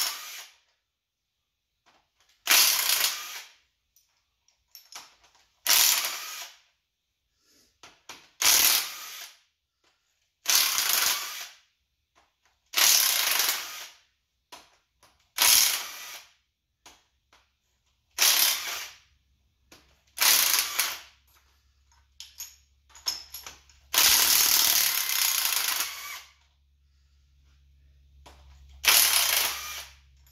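Cordless power driver spinning fasteners off an engine's cylinder head during teardown, in about ten short bursts of a second or so each with pauses between, one longer run of about two seconds two-thirds of the way through.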